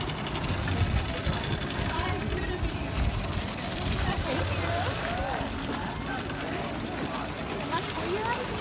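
A low, steady rumble with faint voices of people talking in the background.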